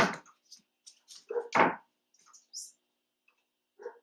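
A large poodle's nails clicking and paws tapping on a hardwood floor and wooden training platforms as it shifts position, with a sharp knock right at the start and light scattered clicks after.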